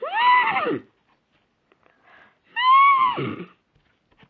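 Two horse whinnies about two and a half seconds apart, each rising and then falling in pitch.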